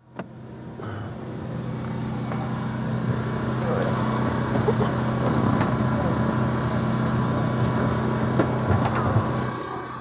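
A vehicle running, heard from inside the SUV's cabin: a steady low hum under a rushing noise that swells over the first few seconds and drops away near the end. A few light knocks sound over it.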